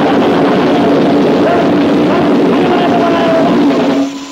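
A band playing loud, distorted crossover thrash, with held guitar chords over a dense wall of sound; the music cuts off abruptly at the end.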